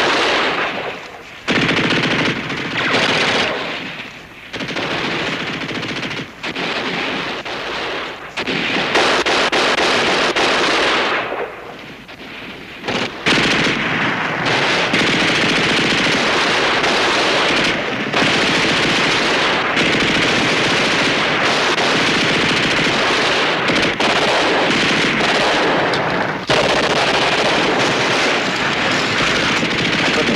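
Heavy machine-gun and rifle fire, coming in stretches broken by short lulls over the first dozen seconds, then running almost without a break.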